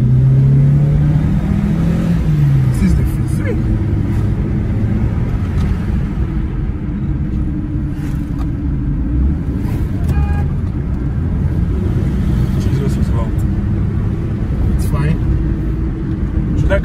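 Toyota RAV4's engine and road noise heard from inside the cabin while driving. The engine pitch rises over the first two seconds or so as it accelerates, then runs steadily.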